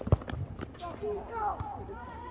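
A basketball bouncing on an outdoor court: a quick run of sharp knocks in the first half second, the first ones loudest. Voices call out across the court about a second in.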